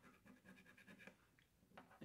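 A scratch-off lottery ticket's coating being scratched away by hand on a tabletop: a faint, rapid run of short scratching strokes that stops about a second in, followed by a couple of light ticks.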